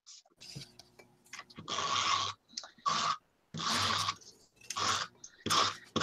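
iCraft tape runner drawn across paper in about five short strokes, laying down adhesive to stick zine pages back to back.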